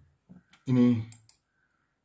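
A man says one short word, then a few sharp clicks follow just after it, a little over a second in, from the computer he is working on.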